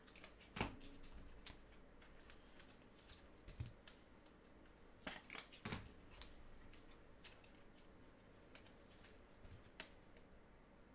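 Quiet, scattered light clicks and rustles of trading cards being handled, with a sharper click under a second in and a short run of clicks around the middle, over a faint low room hum.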